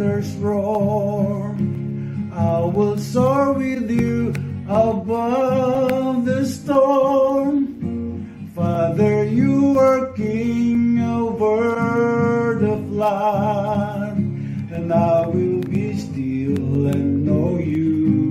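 A man singing a worship song while strumming an acoustic guitar.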